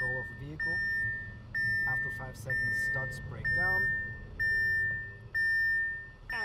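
Audi piloted-driving system's takeover warning: a high electronic beep repeating about once a second, each beep held most of a second, signalling that the driver must take back control of the car.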